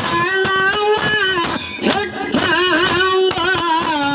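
A woman sings a Kannada folk song (dollina pada) through a microphone, holding long bending notes, with a steady beat of drum and small hand cymbals under her. There are two short breaks in the voice near the middle.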